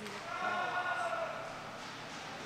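A person's long, drawn-out shout, held for about a second and slightly falling in pitch near its end.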